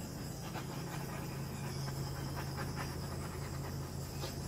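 Small handheld gas torch running with a steady hiss as its flame is passed over wet epoxy resin to pop surface bubbles.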